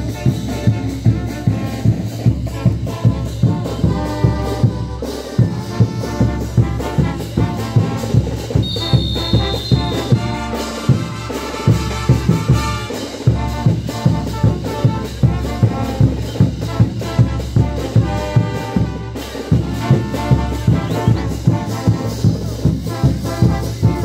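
Brass band music for tinku dancing: trumpets and trombones over a steady drum beat of about two beats a second.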